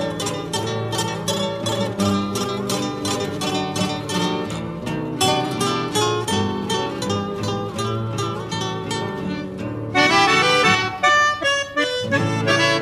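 Instrumental break in a gaúcho regional folk song: plucked acoustic guitar with other strings, then an accordion comes in louder about ten seconds in.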